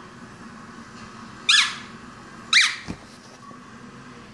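A Chihuahua giving two short, high-pitched yips about a second apart, each rising and then falling in pitch.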